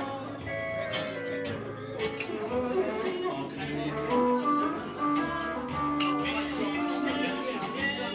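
Live dance music with guitar: a melody of long held notes over a steady strummed rhythm.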